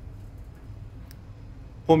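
A low, steady background hum aboard a ship, with one faint click about a second in. A man's voice starts right at the end.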